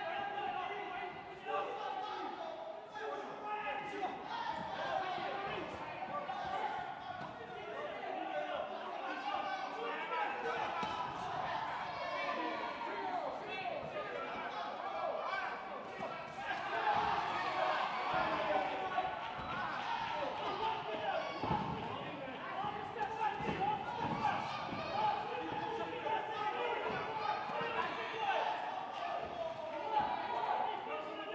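Spectators and cornermen shouting continuously in a large hall during a boxing bout, with scattered thuds from gloved punches and footwork on the ring canvas, more frequent in the second half.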